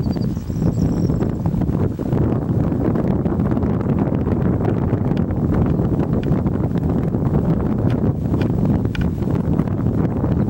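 Wind buffeting the camera microphone: a steady, loud low rumble with fluttering gusts and light crackle.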